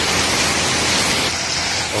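Heavy rain pouring down, a steady hiss.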